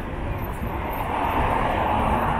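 City street traffic: a vehicle passing on the road, its noise swelling from about a second in, over a steady low rumble of traffic.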